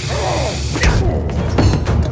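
Aerosol spray can hissing in a long burst that cuts off about a second in, followed by a series of knocks and clatters.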